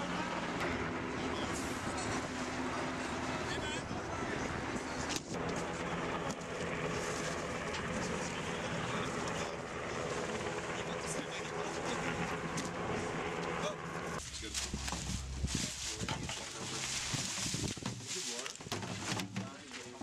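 Steady running of an engine under indistinct voices of people working. About fourteen seconds in, the sound changes abruptly to a deeper low rumble, with voices continuing.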